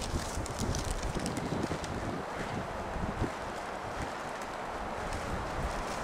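Wind on the microphone outdoors: a steady rushing hiss with uneven low buffeting.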